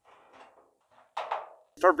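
Hand snips cutting a sheet of weathered copper: faint snipping, then one louder crisp cut about a second in.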